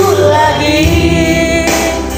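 A song sung into a handheld microphone over a backing music track, with long held notes.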